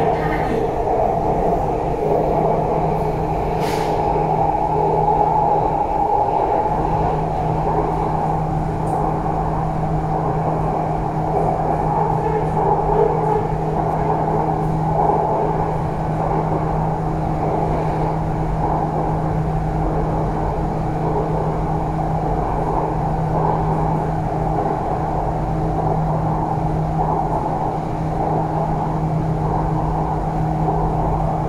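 An MRT metro train running steadily along an elevated track, heard from inside the carriage: an even running rumble with one constant low hum.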